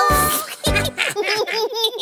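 A children's song ends on a final chord and drum beats, then cartoon character voices break into a rapid run of high giggles, several a second.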